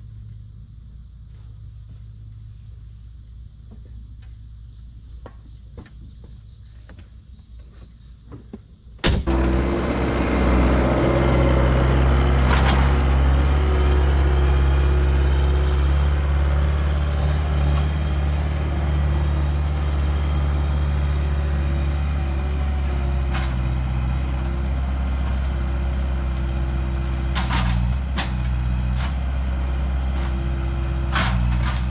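Insects buzzing with a steady high whine, then about nine seconds in a Bobcat skid-steer loader's diesel engine cuts in abruptly and runs loud and steady as the machine drives along a dirt track, with a few knocks near the end.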